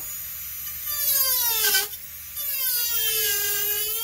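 Master Carver micromotor carving handpiece with a taper burr, running at high speed with a high whine and cutting into basswood. Its pitch sags as the burr bites into the wood and climbs back as the load eases, with a sharp dip a little under two seconds in.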